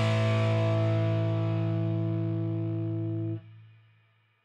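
Final chord of a rock song on distorted electric guitar, ringing out and slowly fading, then cut off suddenly about three and a half seconds in.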